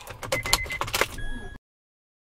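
Keys jangling and clicking inside a car cabin, with two short high electronic beeps. All sound cuts off abruptly about a second and a half in, leaving dead silence.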